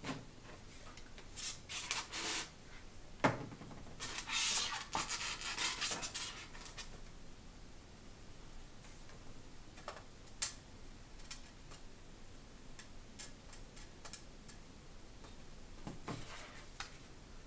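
Hands handling craft materials on a tabletop: rubbing and rustling for a few seconds at a time, a sharp knock a few seconds in and another about ten seconds in, then light scattered ticks.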